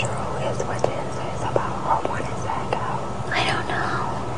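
Two women talking in low, whispered voices, over a steady low hum.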